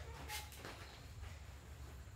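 Quiet room tone with a steady low hum and a faint click about a third of a second in.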